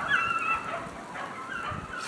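Pack of beagles baying as they run a rabbit's track, with several drawn-out high cries in the first half-second and fainter ones near the end.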